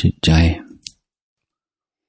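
A man's voice speaking one Thai word ("jit-jai", mind) that ends about half a second in, followed by a short click, then dead silence for the second half.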